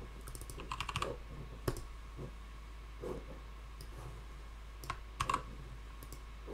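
Typing on a computer keyboard: a quick run of keystrokes in the first second, then scattered single key clicks. The keystrokes are edits to a line of code.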